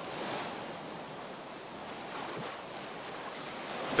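Quiet, steady sound of sea waves and wind at the shore.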